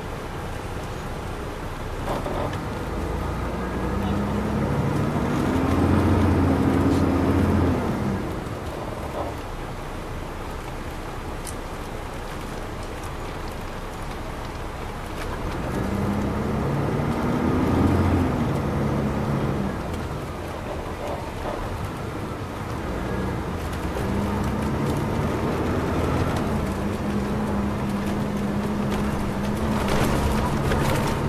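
Detroit Diesel Series 60 engine of a 2002 MCI D4000 coach heard from the rear of the cabin, pulling hard three times, its pitch climbing and then dropping as the automatic transmission shifts up, with steady road rumble between the pulls.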